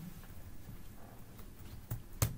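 Quiet classroom room noise with a few faint clicks and knocks, and a sharper click near the end.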